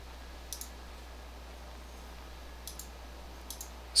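Computer mouse clicking: one click about half a second in, then a few more near the end, over a faint steady low hum.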